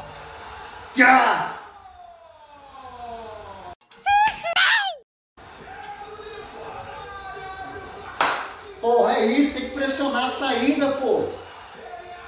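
A man's wordless celebratory yelling: a long falling cry, then a rising whoop. The sound drops out briefly near the middle. About eight seconds in comes a single sharp slap, followed by more voices.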